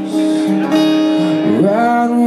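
Acoustic guitar strummed, with steady ringing chords. Near the end a singing voice slides up in pitch into a held note.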